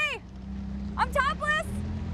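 A car engine's steady low hum. At the start a short high-pitched vocal sound rises and falls over it, and about a second in there are three quick high, sweeping vocal cries.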